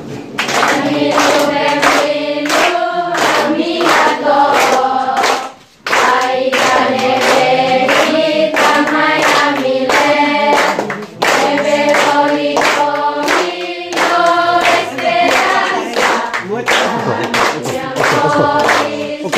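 A group of children and adults singing a welcome song together ("benvindo") with rhythmic hand clapping, breaking off briefly about six seconds in.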